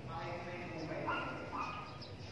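An indistinct voice in the background, with drawn-out notes that step up and down.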